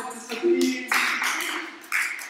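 A small group applauding, the clapping starting about a second in, with voices mixed in.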